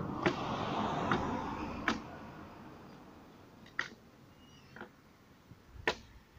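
Sharp knocks of a hand tool cutting into wood, about six irregular strikes one to two seconds apart, over a rushing noise that fades during the first two seconds.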